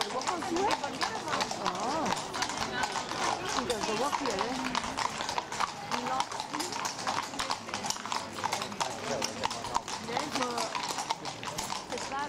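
Horses' hooves clip-clopping on a paved stone street as several mounted horses walk past, a steady run of many overlapping hoof strikes.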